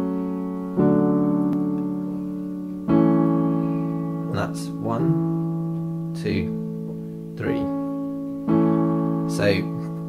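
Yamaha digital piano playing sustained right-hand chords. A new chord is struck a little under a second in, again about three seconds in and again near the end, each held and slowly fading.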